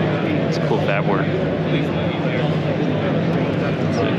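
Busy exhibition-hall background: a steady low hum and the babble of many distant voices, with no single sound standing out.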